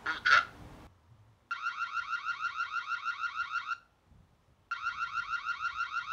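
Built-in siren of a Reolink Argus Eco Ultra battery security camera sounding: an electronic alarm of rapid, repeated rising chirps, several a second, in two bursts of about two seconds each with a second's pause between them.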